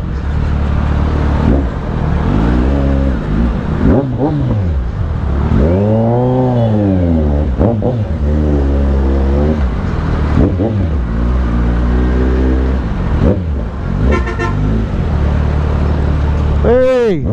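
Kawasaki Z900's inline-four engine, with a newly fitted aftermarket exhaust, idling and revving up and down in slow traffic. The revs rise and fall several times, the biggest rise about six seconds in.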